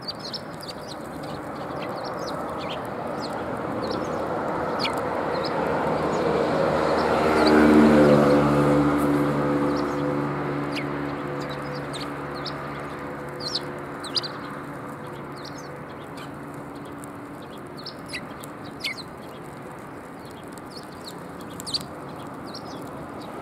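A flock of Eurasian tree sparrows chirping in short, scattered calls while feeding on seed. A low hum with a rushing noise swells up, is loudest about eight seconds in, and fades away.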